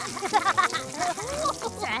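Children laughing during a water-gun fight in a cartoon, over a faint spray of water and background music.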